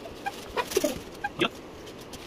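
A hen clucking a few short times, one call falling in pitch near the middle, with a brief rustle of nylon niwar strap being pulled through the weave of an iron charpai.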